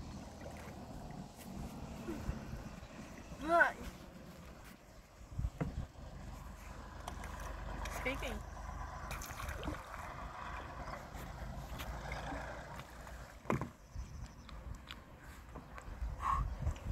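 Water sloshing and splashing around an inflatable stand-up paddleboard as a paddle dips and the board rocks, with a short voice call about three and a half seconds in and a single sharp knock near the end.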